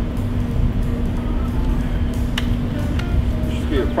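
Steady low rumble with a constant hum, and one sharp click a little after two seconds in as a chainsaw that has not yet been started is handled; the saw is not running.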